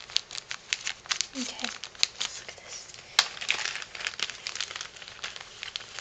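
Clear cellophane bag crinkling in the hands as a handmade tag is slid out of it: a quick, irregular string of crackles.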